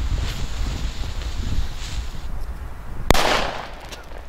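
A 6 g Funke firecracker going off with one sharp bang about three seconds in, followed by a brief echo, over wind rumble on the microphone.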